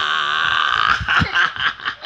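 A long drawn-out high-pitched squeal that breaks off about a second in, followed by short bursts of laughter from a man and a toddler at play.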